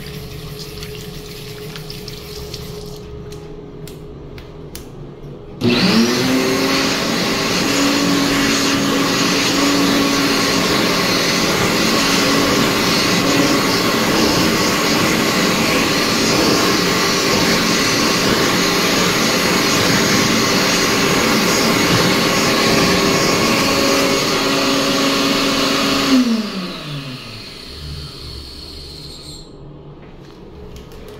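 World Dryer SlimDri hand dryer switching on suddenly about five seconds in, spinning up at once to a loud steady motor-and-airflow blast that runs for about twenty seconds, then cutting off and winding down with a falling whine. Before it starts, a tap runs briefly.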